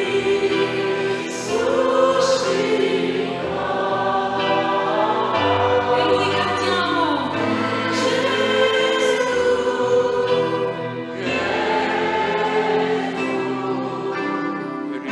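A hymn sung by a choir, many voices holding long notes and moving together from note to note.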